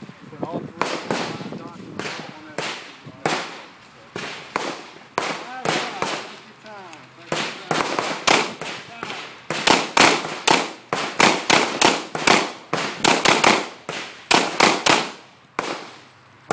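Handgun shots from several shooters on an outdoor firing line, scattered at first and then rapid and overlapping from about seven seconds in.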